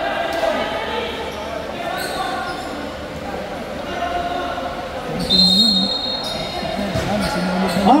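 Basketball bouncing on a hardwood gym floor, a few irregular bounces echoing in a large hall, with voices in the background. A short high-pitched squeak comes about five seconds in.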